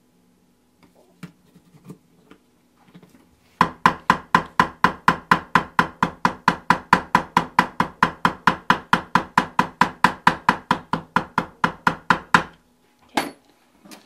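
Fast, even run of mallet strikes on a leather stitching punch driven through a thin leather patch on a granite slab, about four to five hard, ringing knocks a second for roughly nine seconds, after a few light taps.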